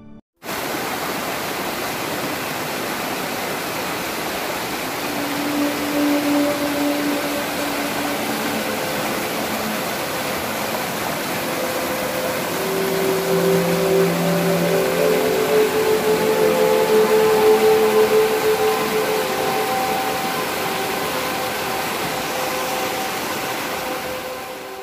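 River water rushing over rocks and a flooded causeway: a steady rush of white water that cuts in abruptly about half a second in.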